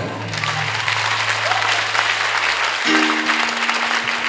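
Congregation applauding, with a low musical note held underneath that changes to a higher sustained chord about three seconds in.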